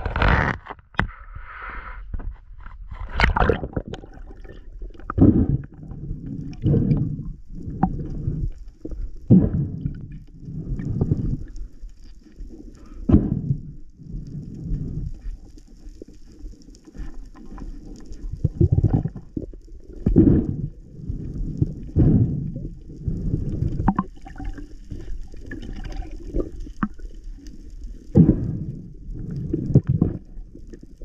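Muffled water sloshing and swirling around a camera at and below the sea surface, in uneven low surges every second or two, with a few sharper knocks.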